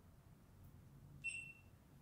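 Near silence, broken once a little past the middle by a short, high-pitched beep lasting about half a second.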